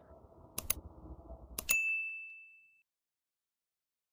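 Subscribe-button animation sound effect: two quick clicks, then about a second later another click followed by a single high bell ding that rings for about a second.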